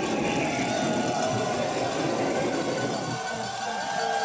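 Bobsleigh runners rumbling and scraping over the ice as the two-man sled slows in the outrun. The rumble dies down about three seconds in, with crowd voices shouting behind it.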